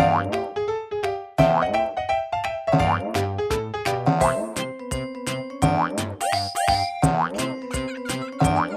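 Cheerful children's cartoon background music with a steady beat, its short melody notes sliding up and down in pitch.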